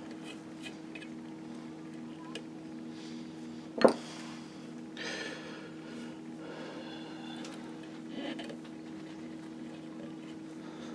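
Quiet hand work on a brass patch box cover: a screwdriver and small brass parts being handled and scraped against the fittings, over a steady low hum. One short, sharp sound stands out just before the four-second mark.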